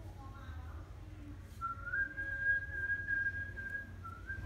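A single high whistled note that rises slightly at first and is then held steady for about two seconds, starting about one and a half seconds in.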